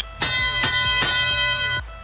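FRC field sound cue for the start of the teleoperated period: a musical, bell-like chime of a few struck notes that rings for about a second and a half and then cuts off.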